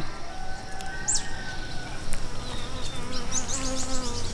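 A flying insect buzzing close by, a steady hum that wavers slightly in pitch as it moves about.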